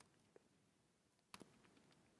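Near silence: room tone with a couple of faint laptop keyboard clicks, the clearer one a little past halfway.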